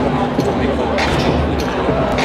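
A gymnast's feet thudding onto a sprung floor-exercise floor, the loudest thud about a second in, over a steady background of spectators' voices.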